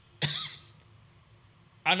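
A man clears his throat once, briefly, about a quarter second in, picked up by a microphone. A man starts speaking near the end, and a faint steady high whine sits underneath throughout.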